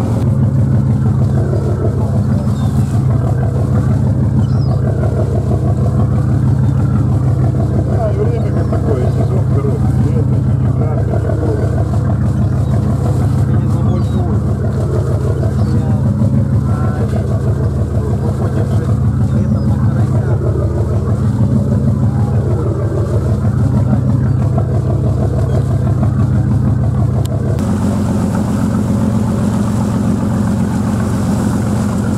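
Fishing boat's engine running steadily under way, a loud low drone, with the sea rushing past the hull.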